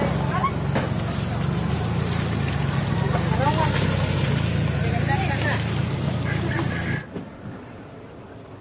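A small vehicle engine running steadily at low speed, with people talking over it; the engine sound cuts off suddenly about seven seconds in.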